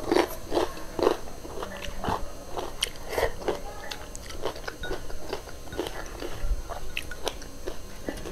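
A person chewing a mouthful of rice and fried chicken eaten by hand, close to the microphone, with wet smacking and crunching in a steady rhythm of about two chews a second, loudest in the first second or so.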